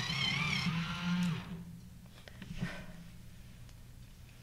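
Small battery-powered pencil sharpener running with a colored pencil fed into it, its motor whine wavering in pitch as it cuts. It stops about a second and a half in, followed by a few light clicks as the pencil and sharpener are set down.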